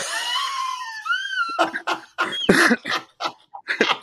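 Two men laughing hard. A high-pitched, squealing laugh gives way after about a second and a half to a run of short bursts of laughter.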